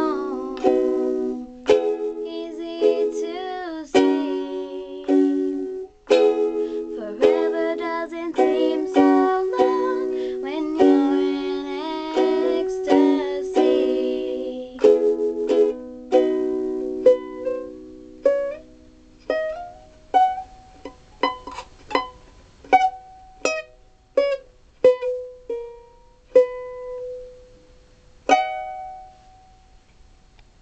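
Ukulele strummed under a girl's singing for about the first fifteen seconds, then the ukulele alone plays single plucked notes that come further apart and fade away, closing the song with one last ringing note near the end.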